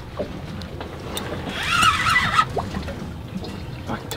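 Open-water ambience around a small fishing boat: water lapping and wind noise, with a few faint clicks. About halfway through, a brief high, wavering pitched sound.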